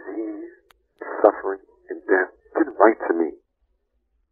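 Speech: a voice talking in short phrases, narrow in sound like an old tape or radio recording.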